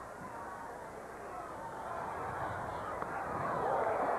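Ballpark crowd noise, a murmur of many voices that swells steadily louder through the second half.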